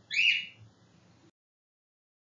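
A brief high, whistle-like sound about a quarter second in, fading over half a second into faint room tone; just past halfway the sound track drops to complete silence.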